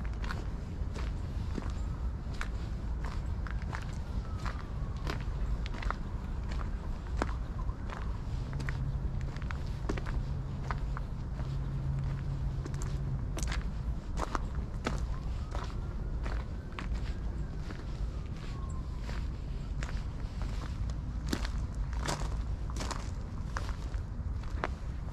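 Footsteps on a gravel path at a steady walking pace, each step a short crunch, over a steady low rumble.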